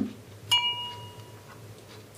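A single chime strike about half a second in, a clear ringing tone that dies away over about a second and a half.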